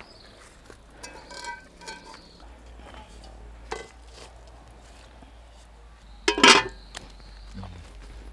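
Quiet outdoor background with a few faint clinks of a utensil against a metal cooking pot, and one short loud cry about six and a half seconds in.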